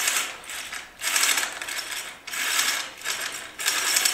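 Home-built Hebridean wind vane turret turning on its gear ring as the control line is pulled round its pulley: a rattling run of mechanical clicks in repeated surges about a second long.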